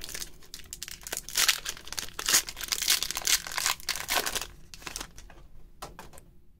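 Foil wrapper of a Pokémon TCG Silver Tempest booster pack being torn open and crinkled by hand: a run of irregular crackles and rips that thins out near the end.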